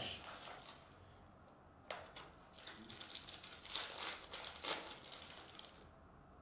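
Cellophane wrapper crinkling and rustling in irregular bursts as a trading-card box is unwrapped and the cards slid out. A sharp click comes about two seconds in.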